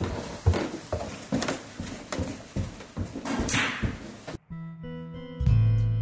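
Footsteps going down a stairway, a few uneven steps about half a second apart over a steady hiss. These cut off abruptly and give way to music with held notes and a heavy bass line.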